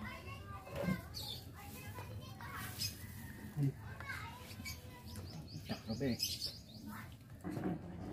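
Background voices of children and people, with a few short bird chirps.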